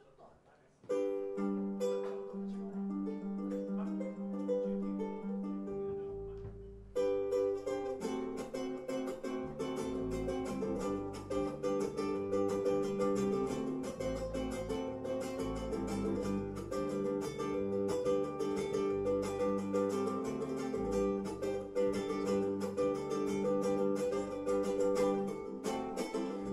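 Ukulele and electric bass playing live instrumental music. The ukulele starts alone about a second in, the bass joins around six seconds, and the strumming fills out from about seven seconds.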